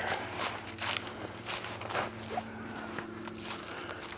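Footsteps of a hiker walking on a dirt trail strewn with dry fallen leaves, a run of short crunching steps.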